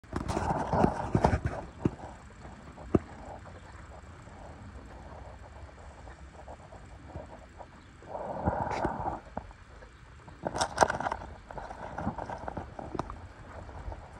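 A horse moving at a walk and jog in deep sand, its hoofbeats coming as soft, uneven thuds with a few sharper knocks. Several louder rushes of noise lasting about a second come at the start and again twice in the second half.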